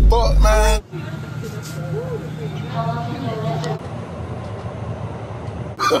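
Background music with a heavy bass cuts off about a second in. Then comes the ambience of a crowded railway platform: a steady low hum with faint distant voices, and a thin high whine that stops about halfway through.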